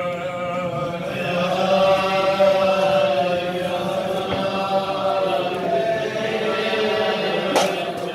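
A group of men singing a slow Hasidic melody together, with long drawn-out notes. There is one sharp knock near the end.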